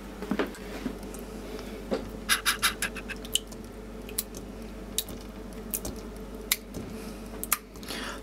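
A hand squeezing and kneading swollen nappy hydrocrystal gel, thickened into slime, in a glass bowl of water. It gives scattered small wet clicks and squelches, with a quick run of them about two and a half seconds in.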